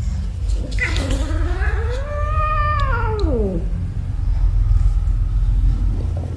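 A cat's single long, drawn-out yowl, rising and then falling in pitch over about three seconds, the cry of a cat annoyed at being teased by another cat. A steady low rumble runs underneath.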